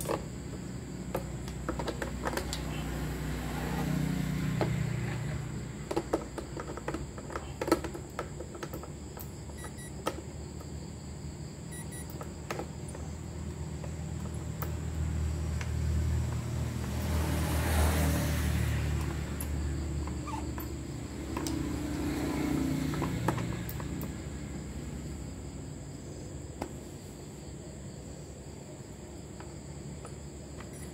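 Handling noise as an induction cooktop is set up by hand: scattered clicks and knocks, and a rustle of clothing brushing close by about halfway through, over a low steady rumble.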